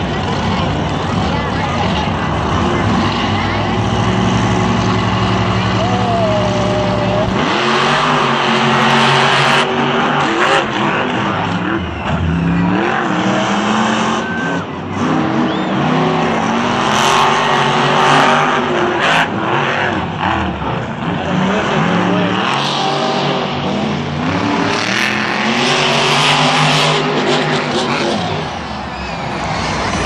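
Monster truck engines, supercharged V8s, running with a steady drone, then revving hard and easing off in repeated rising and falling sweeps from about seven seconds in, over the din of the stadium crowd.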